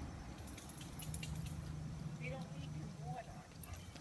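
Faint, irregular metallic clinks and jingling over a steady low hum, with faint voices in the background.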